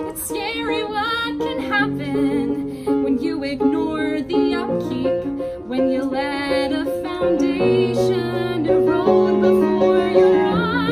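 A woman singing a comic musical theatre song over piano accompaniment, with vibrato on held notes.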